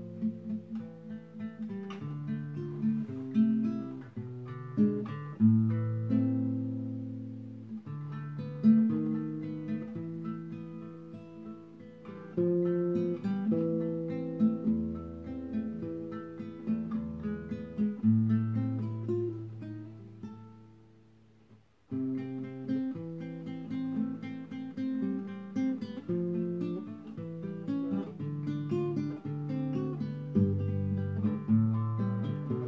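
Nylon-string classical guitar played fingerstyle, with plucked bass notes under a picked melody. About twenty seconds in, the notes ring out and die away almost to silence, and the playing picks up again about two seconds later.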